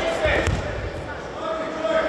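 A judoka's body landing on the tatami mat from a throw: one dull, heavy thud about half a second in.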